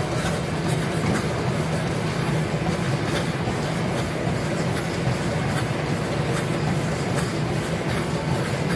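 Treadmill running fast: a steady rumble from the belt and deck under a runner's pounding stride, with faint irregular clicks.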